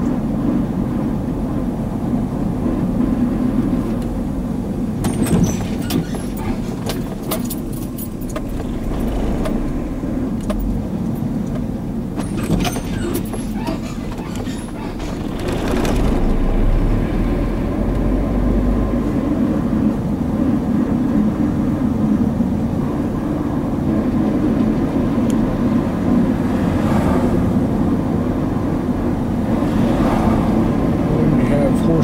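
Steady engine and road rumble heard from inside a moving car's cabin, with bursts of clicking and rattling about five seconds and again about twelve seconds in; the rumble grows louder from about sixteen seconds in.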